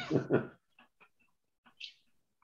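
A short human laugh trailing off in the first half-second, followed by a few faint clicks and a brief hiss near the end.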